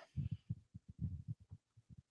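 Faint, irregular low thumps of handling noise on a handheld microphone, several a second, thinning out near the end.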